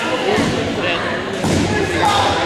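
Dodgeballs thudding a few times against the hardwood gym floor and walls during a game, over players' voices echoing in the large gym.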